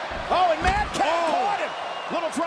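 A heavy thud as a wrestler is dropped face-first onto the ring mat and a folding metal chair by a drop toe hold, strongest about two-thirds of a second in. A man's voice exclaims over it.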